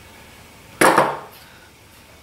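A single short knock of a hand tool being picked up or handled, about a second in.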